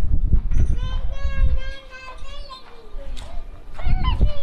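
High-pitched voices calling out in long, drawn-out cries, with a low rumble on the microphone during the first second or so and again near the end.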